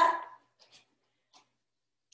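A woman's voice finishing a spoken word, then near silence broken only by two faint, brief sounds.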